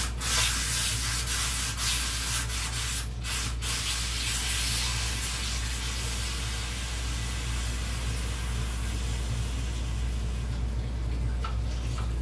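Water running from a kitchen tap into the sink: a steady hiss that thins out near the end, over a constant low hum.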